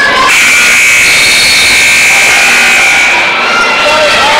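Gym scoreboard buzzer sounding one steady high tone for about three seconds over crowd noise, signalling the end of a wrestling period.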